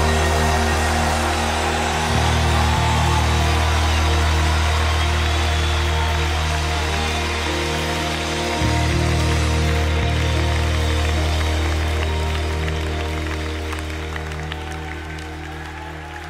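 Instrumental ending of a worship song played by a band: sustained chords over a steady bass, changing chord a couple of times and gradually fading out.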